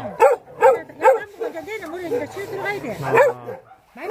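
Shar Pei-type dog barking in a quick run of short, high yelping barks, some drawn out into a wavering whine, with one last bark a little after three seconds.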